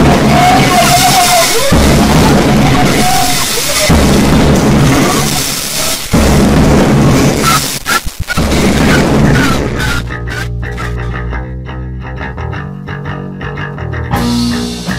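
Hardcore punk band recording playing loud, fast and distorted, with guitars and drums filling the sound. About ten seconds in it drops to a sparser passage of held notes without cymbals.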